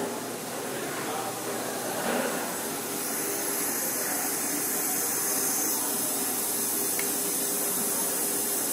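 Steady hiss from brewery process equipment and pipework, becoming louder about three seconds in, with a faint steady hum underneath.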